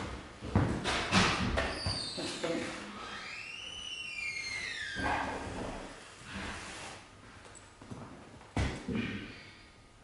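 A few knocks and thumps in the first couple of seconds, then a high sliding tone that rises and falls back, and one more sharp thump near the end.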